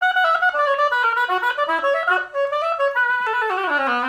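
Oboe played on a Jones Double Reed student oboe reed of medium strength: a quick run of notes that falls near the end to a low note. The reed sounds close to pitch, in the ballpark for a usable beginner's reed.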